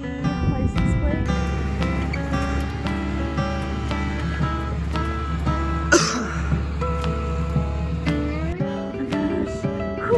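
Background music with held, layered notes and a short noisy swell about six seconds in.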